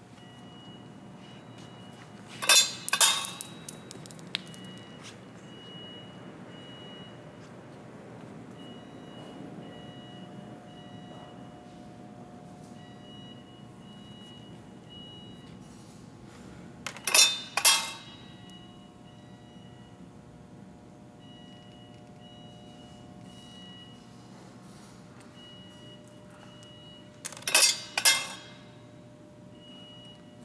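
Three short bursts of metallic clattering, each a quick double clack, about fifteen and ten seconds apart, from the stainless-steel discharge chute and reject flap of a Safeline PharmX capsule metal detector as test pieces pass through. A faint on-off high tone runs underneath.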